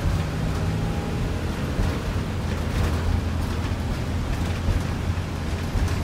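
School bus engine running with road and tyre noise while driving, heard inside the cab from the driver's seat: a steady low hum.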